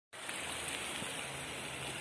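Steady hiss of a small creek's muddy water running, the stream flowing after the first autumn rains.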